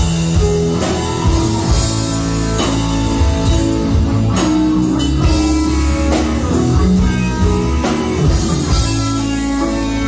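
Live rock band playing an instrumental passage: electric guitar, bass, keyboard and drum kit, with drum strokes under held chords, recorded from within the audience in the club.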